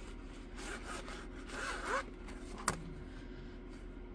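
Rubbing and rustling of a diamond painting canvas being handled and shifted against its board, with one sharp click about two-thirds of the way through.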